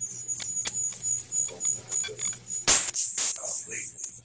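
A loud, high-pitched electronic whistle on the call audio: a steady tone with a fainter lower tone beneath it, broken about two-thirds of the way through by a short burst of noise.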